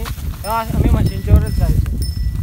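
Short bits of a person's voice over the low thuds and rustle of a water buffalo walking through dry grass with a rider on its back.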